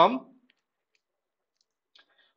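A man's voice trails off at the start, then near silence broken by a few faint, isolated clicks of computer keyboard keys.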